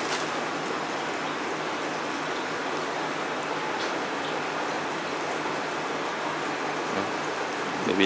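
Steady hiss of splashing, running water from a reef aquarium's water circulation, with a few faint clicks.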